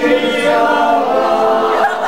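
A group of people singing together, loud and sustained.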